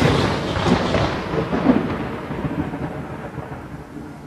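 Thunder-and-rain sound effect at the close of a rap song, an even noise fading steadily away over the few seconds.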